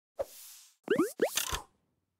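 Logo-reveal sound effect: a short pop with a trailing airy whoosh, then two quick rising 'bloop' blips with a bright shimmer, all over within about a second and a half.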